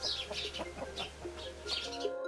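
Birds chirping outdoors in short, high, falling chirps, mixed with low clucking from domestic hens perched in a tree. Background music fades in near the end.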